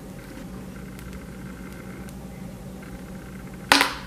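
Fingers kneading and poking thick slime mixed with clay: soft squishing, then one loud, sharp pop of trapped air bursting from the slime near the end.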